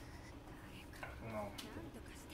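Faint speech at low level, with a couple of soft clicks.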